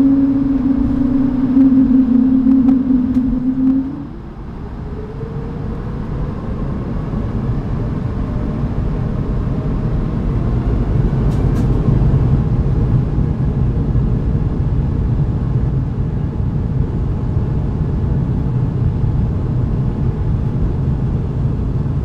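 Airbus A220's Pratt & Whitney PW1500G geared turbofan engines heard from inside the cabin: a steady low hum for about four seconds, then a rising whine and a roar that grows louder over the next several seconds as the engines spool up for the takeoff roll.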